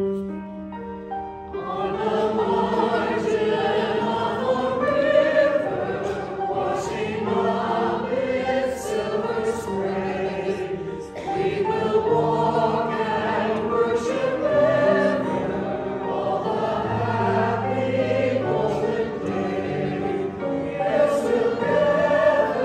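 Mixed church choir singing with piano accompaniment; a piano chord sounds alone for about the first second and a half before the choir comes in.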